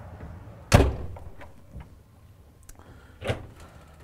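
The hinged panel of a motorhome's emergency egress window is shut with one loud thud about a second in. A softer knock follows near the end as a wooden wardrobe cabinet door is opened.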